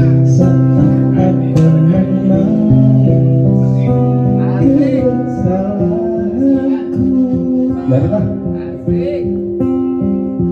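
A band playing a song live: guitar chords held over a bass line, with a melody line that wavers in pitch from about halfway through.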